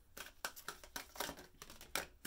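A deck of oracle cards being shuffled and spread by hand: an irregular run of papery snaps and slaps as the cards are worked. The deck is new, sticky and a little stiff.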